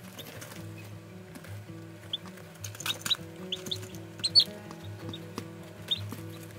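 Background music, with domestic chicken chicks peeping in short, high cheeps, several of them between about two and four and a half seconds in.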